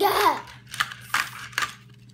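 A young girl's sung note sliding down in pitch and breaking off within the first half second, followed by a few light clicks.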